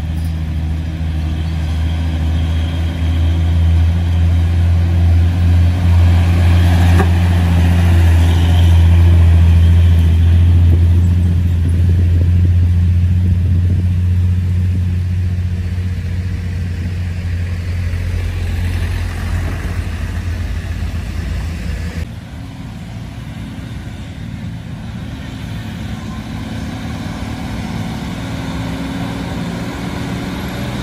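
Heavy diesel truck engines pulling loads of sugarcane up a hill. A low, steady drone builds to its loudest about ten seconds in, then fades, and drops suddenly a little past twenty seconds.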